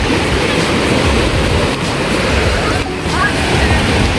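Sea surf breaking and washing up over the sand at the water's edge, a steady loud rush, with wind buffeting the microphone.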